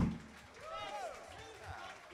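The band's last chord cuts off just after the start, followed by faint, indistinct talking away from the microphone.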